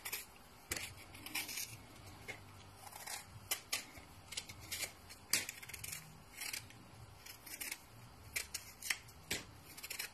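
A knife cutting and peeling a lemon held in the hand: irregular short, crisp scraping clicks, several a second.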